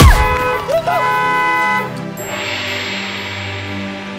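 A sudden heavy thump as an SUV strikes a pedestrian, with a short cry just after, over sustained blaring horn-like tones that stop about two seconds in; a soft music wash follows.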